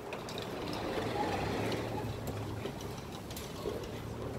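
A steady low mechanical hum with a few faint ticks over an even background hiss.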